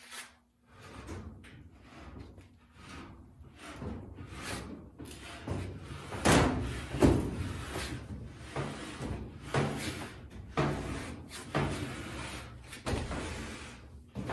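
Whirlpool top-load washer being dragged out from the wall in short jerks, its cabinet scraping and bumping on the floor, with a run of separate scrapes from about five seconds in, the loudest near six to seven seconds.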